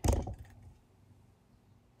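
Camera handling noise: a few quick knocks and rubbing as the camera is repositioned, dying away within about half a second, then near-total silence.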